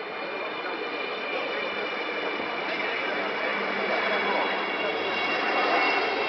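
A steady engine noise with a high whine in it, growing steadily louder.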